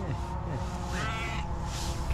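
Tuxedo cat giving one short, high-pitched meow about a second in.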